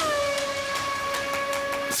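A single long held tone, opening an advertisement's soundtrack, that slides down in pitch just after it starts and then holds level over a faint hiss.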